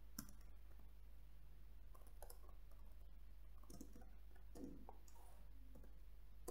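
Faint computer keyboard keystrokes, tapping in short irregular clusters over a low steady hum.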